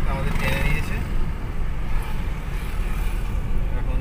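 Steady low rumble of a car driving, heard from inside its cabin.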